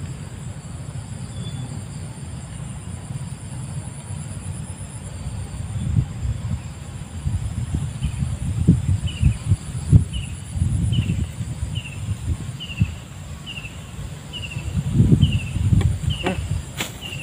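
Wind rumbling on the microphone with a few dull thumps, under a steady faint high-pitched insect drone. From about halfway through, a short falling chirp repeats about twice a second.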